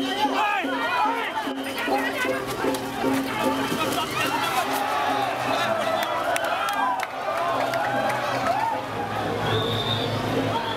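A large crowd of voices calling out and chattering over music with a repeating low note, which fades out about three and a half seconds in.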